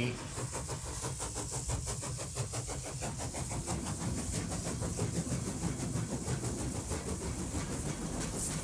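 A train running, with a fast, even clatter of wheels.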